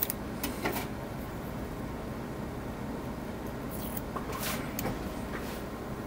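Faint handling noises: a few light clicks and taps, near the start and again late on, as yellow masking tape and a small tool are worked over a plastic model ship deck, over a steady background hum.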